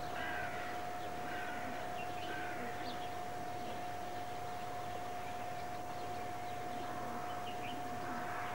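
Scattered bird calls, a few short calls in the first three seconds and high chirps near the end, over a steady hiss. A constant high-pitched tone runs underneath the whole time.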